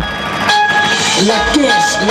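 DJ sound system playing loud dance music. About half a second in, a steady horn-like blast of several held tones enters, with voice-like glides over it.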